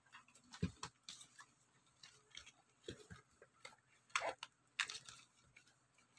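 Faint, scattered clicks and crackles of hands handling cardboard and plastic blister packaging, with a few sharper taps spread through.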